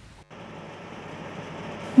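Steady mechanical running noise from a water-well drilling rig at work, growing slowly louder.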